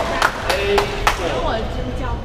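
A few sharp knocks of a squash ball in the first second or so, with short squeaks of rubber-soled shoes on the wooden court floor.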